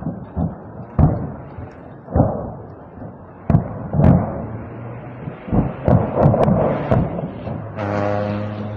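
Ammunition exploding in a burning munitions depot: an irregular series of booms and sharp bangs over a rumbling fire, several coming in quick succession in the second half.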